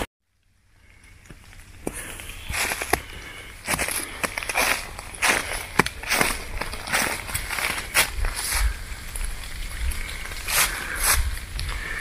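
Hiker's footsteps on a thin layer of snow over dry leaves, at a steady walking pace of a little over one step a second, over a steady low rumble. The sound fades in about a second in.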